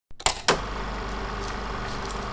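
Two sharp clicks in quick succession, then a steady hiss with a low electrical hum: the open noise floor of a microphone recording.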